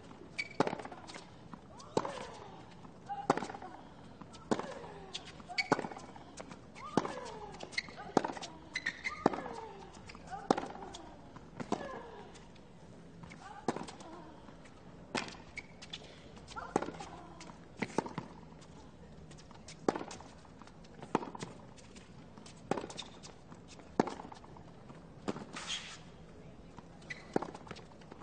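A long tennis rally on a hard court: racket strikes on the ball come about every 1.2 to 1.5 seconds, with ball bounces between them. Many strikes are followed by a short grunt from the hitting player that falls in pitch.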